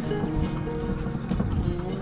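Background music with held notes and light percussive ticks.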